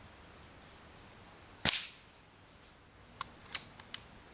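A Daystate Huntsman Classic .177 air rifle with a shrouded barrel fires once, a sharp report that dies away quickly, about halfway through. A few smaller sharp clicks follow near the end.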